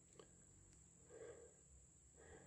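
Near silence: faint woodland ambience with a steady, faint high-pitched insect buzz.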